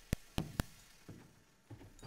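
Three sharp knocks in quick succession within the first second, then a couple of fainter ones.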